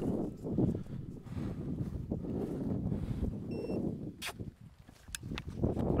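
Rustling footsteps through dry prairie grass, with a few sharp clicks in the second half and a short faint beep midway.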